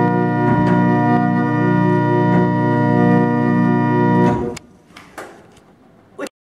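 Small pipe organ played with full organ, all its stops drawn together, sounding one rich sustained chord that holds steady and is released a little over four seconds in.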